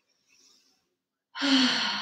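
A woman's long audible sigh about one and a half seconds in. It opens with a short voiced note and trails off as a breathy exhale.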